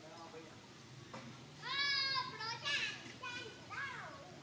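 A run of four or five loud, high-pitched, arching cries from a macaque, starting just under two seconds in, each short and rising then falling in pitch.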